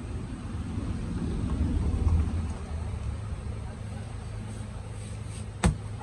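A motorcycle seat in its vinyl cover being handled on a wooden workbench, with one sharp knock near the end, over a steady low hum.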